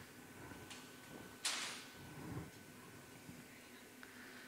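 Quiet workshop room tone with a faint steady hum, and a brief rushing noise about a second and a half in.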